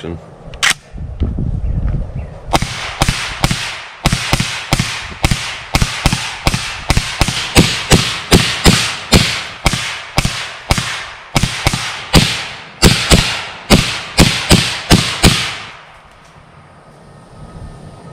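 Suppressed firearm firing a long, rapid string of shots, about two to three a second for some thirteen seconds, each a sharp crack with a short echo. The shots are plainly loud: the suppressor does not make the gun silent.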